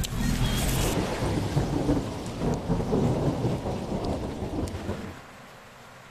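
Thunder rumbling, loud and rolling with a hiss over it, then dying away about five seconds in.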